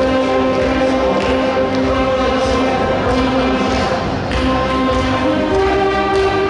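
Saxophone ensemble playing a slow melody in long held notes, several parts sounding together in harmony.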